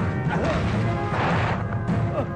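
Dubbed film fight sound effects over loud background music: a short crashing hit a little over a second in, as a body is thrown to the ground.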